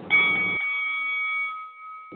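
A bell struck once, ringing and fading away over about a second and a half: the bell signalling the start of a battle round.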